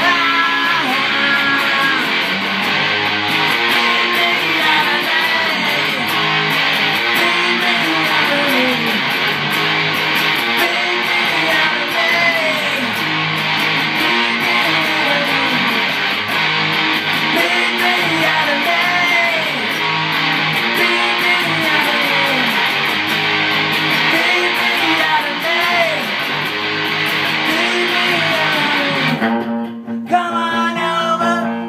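Electric guitar lead through distortion: a Fender Stratocaster with a DiMarzio BC-1 bridge pickup, played through a ProCo RAT pedal into a Fender Vibro Champ amp, with notes bent up and back down again and again.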